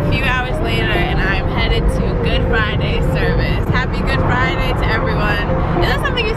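Steady low rumble of a moving car heard from inside the cabin, under a woman's talking.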